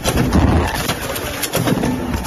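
Drip coffee bag packing machine running: a loud, steady mechanical noise with a low pulsing.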